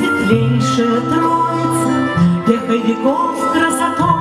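A woman singing a Russian song over a recorded backing track, played through an outdoor stage sound system. The backing has held notes and a steady bass line.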